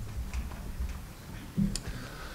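Footsteps and a chair being handled as someone arrives at a table: a few light clicks and knocks, with a low thump and a sharp click about one and a half seconds in.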